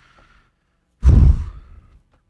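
A man's loud sigh into a close microphone, one breath about a second in that fades away over half a second.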